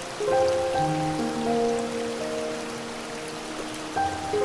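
Slow, soft piano chords held over a steady rush of waterfall water. A new chord comes in about a quarter second in and another right at the end.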